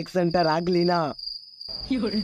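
A steady, high-pitched insect call, one unbroken tone, under a man's voice that stops about a second in.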